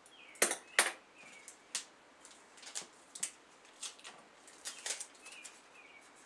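A series of sharp clicks and clacks from tapes and plastic cases being handled on a table, the two loudest close together about half a second in, the rest scattered. There are a few faint short squeaks among them.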